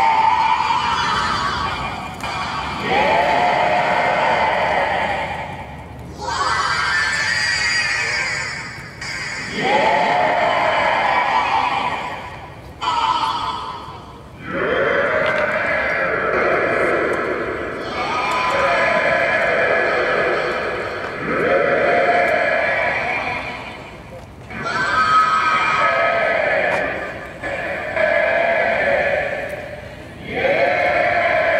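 Electronic sound design played from the participants' smartphones through a performance app: overlapping, wavering, voice-like tones that swell and fade in phrases of two to four seconds, triggered by the players' gestures.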